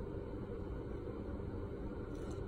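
Steady low background hum and hiss of the room, with no distinct event.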